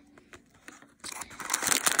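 Thin plastic wrapping inside a small toy blind bag crinkling and rustling as hands dig into it, starting about a second in after a few soft ticks.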